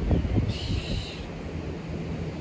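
Tractor engine running steadily, a low even drone, with wind noise on the microphone.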